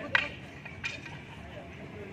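Two sharp clacks of rattan arnis sticks during a stick disarm, the first and louder one just after the start, the second less than a second later.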